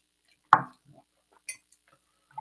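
A glass tasting glass set down on a wooden tabletop: a short knock about half a second in, then a smaller, brighter click about a second later.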